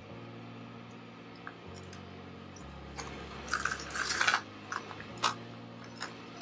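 A wet bicycle chain clicking and rattling in a plastic tub as it is picked up and handled, in several short bursts starting about halfway through.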